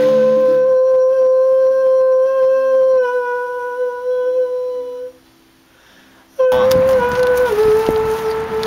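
A man's voice holding one long sung note at a studio vocal microphone, dipping slightly in pitch about three seconds in and stopping shortly after five seconds. After a brief silence it cuts back in suddenly as another held note over outdoor background noise, which steps down in pitch near the end.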